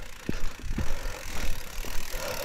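Santa Cruz mountain bike rolling down a dirt singletrack: a low tyre rumble with irregular clicks, knocks and rattles from the bike over the bumps.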